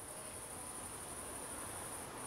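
Crickets chirping, a faint, steady, high-pitched trill.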